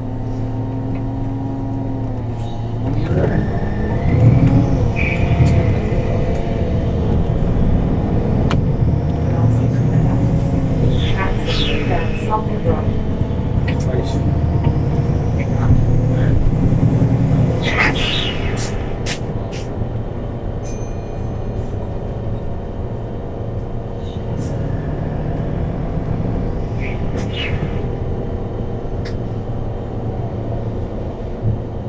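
Cabin sound of a MAN natural-gas city bus: the engine runs steadily, then pulls away about three seconds in, its note rising and stepping through gear changes. Rattles and clicks run throughout, with a brief loud clatter a little past the middle.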